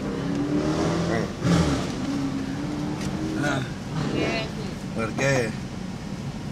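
Indistinct talking over the steady low hum of a motor vehicle, with a louder low swell of vehicle noise about a second and a half in.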